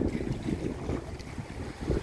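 Pool water sloshing and splashing as sea lions swim fast just below, with wind buffeting the microphone and a louder burst near the end.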